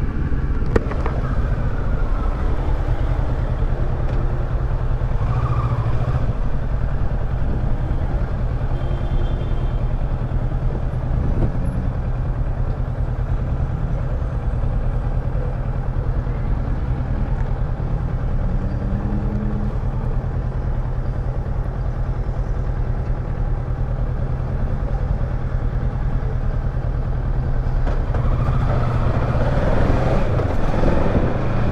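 Kawasaki Versys 650 parallel-twin engine running steadily at low speed in traffic, with road and wind noise on the bike-mounted microphone. Near the end a rising sweep is heard as the engine picks up.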